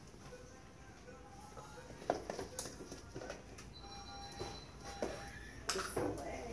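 Faint background music with short held notes, with a few small clicks about two seconds in and a louder rustle or knock near the end, typical of handling a syringe and tubes.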